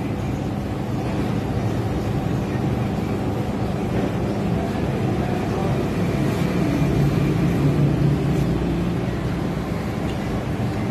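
Steady low mechanical hum of commercial ice cream machines running, growing a little louder about seven to eight seconds in.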